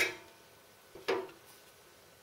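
Two sharp metal clinks with a short ring, the first right at the start and the second about a second in: steel tongs knocking against the stainless stove frame as a fuel block is slid into the combustion chamber under the pot.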